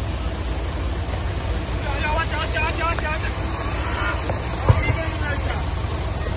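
Indistinct voices of several people calling out at a distance over a steady low outdoor rumble, with one short bump a little before the five-second mark.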